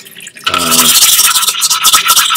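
Nagura stone being rubbed back and forth on a hand-held diamond lapping plate, lapping the stone flat: a loud, gritty scrubbing that starts about half a second in, with a steady high note running through it.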